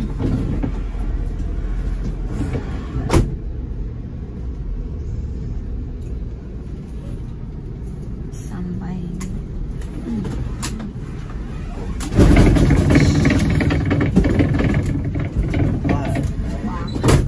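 Bus engine and road noise heard inside the driver's cab while driving, a steady low rumble. A sharp click about three seconds in, and the noise suddenly gets louder from about twelve seconds on.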